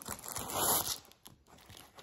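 Plastic packaging crinkling as a diamond-painting canvas in its clear plastic bag is handled: one noisy rustle lasting well under a second, then faint scattered crackles.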